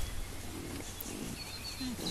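Wild boar grunting softly a few times while rooting together, a short low falling grunt near the end.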